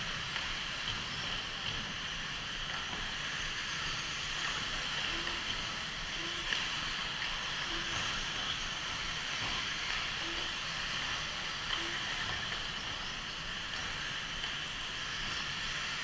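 1/8-scale electric RC buggies racing around a dirt track: a steady high hiss of brushless motors and tyres. A few short low beeps sound in the middle.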